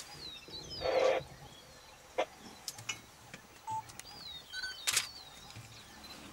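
Birds calling in repeated swooping whistles, with one short, loud buzzy sound about a second in and a few sharp clicks near the middle and end.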